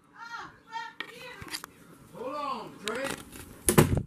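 A person's voice making a few short, quiet wordless sounds, one of them rising and falling in pitch, with a loud sharp knock near the end.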